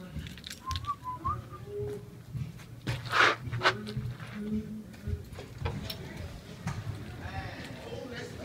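A person whistling a few short notes, with low handling rumble and a loud brief burst of noise about three seconds in.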